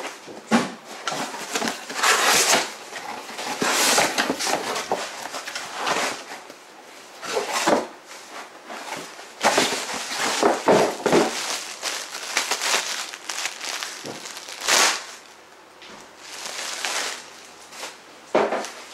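Cardboard shipping box being opened and handled, with irregular rustling, scraping and crinkling of cardboard and packing in uneven bursts with short pauses.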